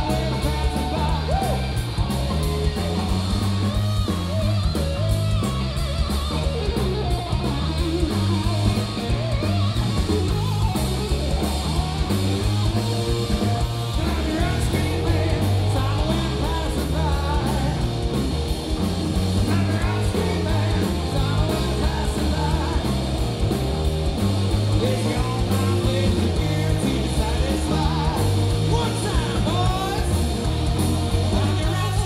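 Live rock band playing at full volume: electric guitar over bass guitar and drums, with a steady beat.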